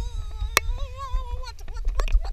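Wind rumbling on the action-camera microphone during a tandem paraglider's takeoff run, with a sharp knock about half a second in. A held, slightly wavering tone runs over it for the first second and a half.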